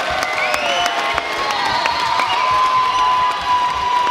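Indoor fight crowd cheering and applauding, with scattered claps and shouts, and a long steady high-pitched whistle or call held through the second half.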